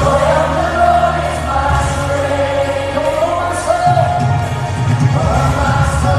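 Live worship music over the arena sound system: a male lead singer with the band, heard from the audience.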